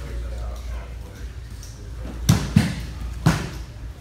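Three sharp slaps of bodies and hands on foam grappling mats during a jiu-jitsu roll: two in quick succession a little past halfway, then a third about three quarters of a second later.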